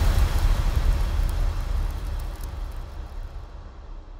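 Low rumbling tail of a cinematic logo sound effect, with a noisy hiss above it, fading steadily away.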